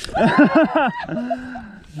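A woman laughing in quick excited bursts, then one drawn-out held cry.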